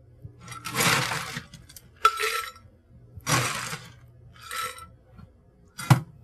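Ice cubes dropping into a pitcher in four rattling bursts about a second apart, filling it a quarter full, with a short knock near the end.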